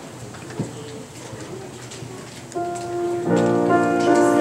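Low room noise with a couple of knocks, then about two and a half seconds in a piano begins playing held notes that build into fuller chords near the end.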